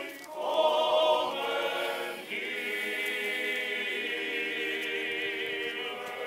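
Male choir singing an Orthodox funeral chant a cappella. A brief break at the start leads into a new phrase, and from about two seconds in the choir holds a long steady chord.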